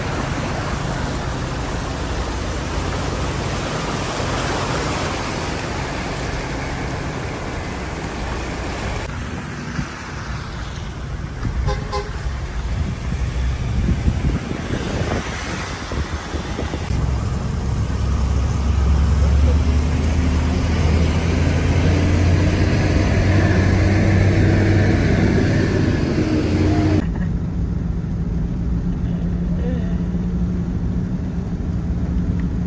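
A car driving through deep floodwater in the rain: water washing and spraying against the body over the engine's low, steady drone. A few short horn toots come partway through.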